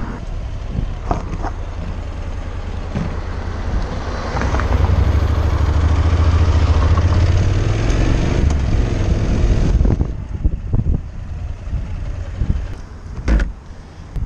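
Honda NC750X motorcycle's parallel-twin engine pulling away and accelerating, getting louder from about four seconds in, then easing off around ten seconds.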